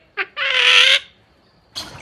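Crested myna giving a brief note and then one loud, harsh squawk lasting about half a second.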